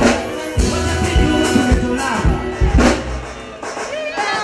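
Live band playing an instrumental passage between sung lines: drum kit hits under steady held notes.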